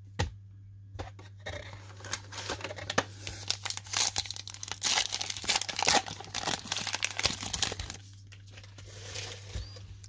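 A foil wrapper of a 2020 Heritage Minor League baseball card pack being torn open and crinkled by hand: a dense run of crackling tears, loudest in the middle, over a low steady hum.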